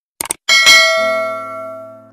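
Subscribe-button animation sound effect: a quick double mouse click, then a bell ding that rings out and fades away over about a second and a half.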